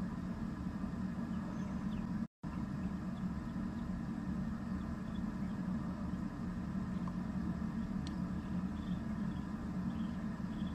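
Steady low background rumble with no distinct events, cutting out completely for a split second about two seconds in.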